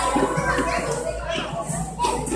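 A group of young children chattering and calling out at once, many voices overlapping.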